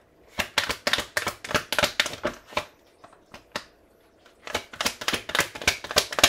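A deck of tarot cards being shuffled by hand in quick runs of crisp clicks and riffles, pausing for a couple of seconds in the middle before starting again.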